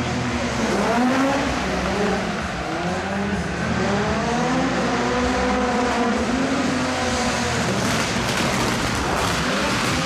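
2000cc-class race car's engine revving hard, its pitch rising and falling again and again, with tyre squeal as the car slides through a demo run.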